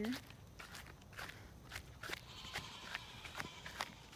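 Footsteps through freshly mowed grass: a faint, irregular string of short soft steps, a few each second.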